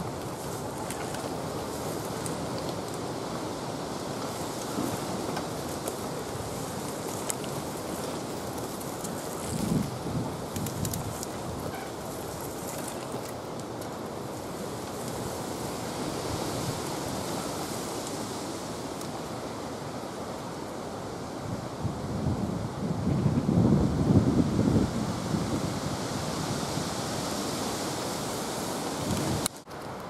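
Wind buffeting an outdoor microphone, a steady rushing noise with stronger low gusts about ten seconds in and again around twenty-three to twenty-five seconds in. The sound drops abruptly just before the end.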